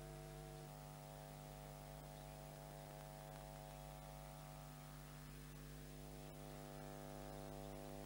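Faint, steady electrical mains hum with a buzz of evenly spaced tones on the soundtrack, and nothing else heard.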